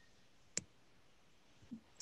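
Near silence with a single sharp click about half a second in, and a faint short low sound just before the end.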